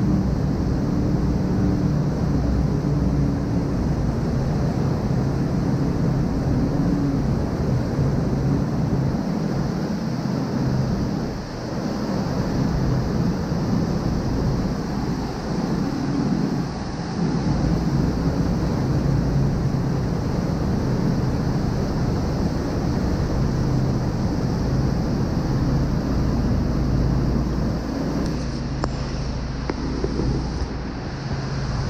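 Speedboat engines running hard under way, a steady low drone, over rushing, churning water and wind buffeting the microphone.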